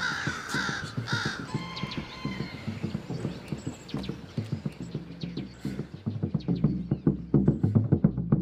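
A crow cawing a few times near the start, under a film score of rhythmic percussive taps that builds and grows louder toward the end.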